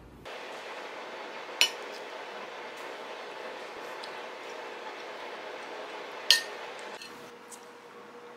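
Two sharp clinks of metal cutlery against a ceramic plate, one about a second and a half in and one about six seconds in, over a steady background hiss.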